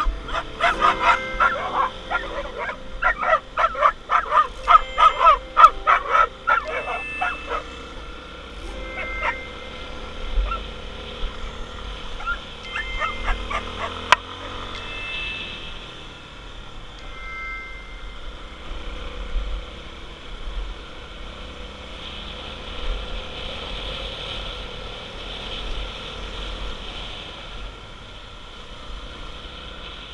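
A dog barking rapidly and repeatedly at a passing dirt motorcycle for about the first eight seconds, with a few more barks around twelve to fourteen seconds in. Under and after the barking, the motorcycle runs on steadily with wind noise on the microphone.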